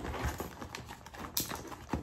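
Crinkling and rustling of a clear iridescent plastic gift bag as a hand rummages inside it among folded paper slips, a run of small crackles with a couple of sharper clicks near the end.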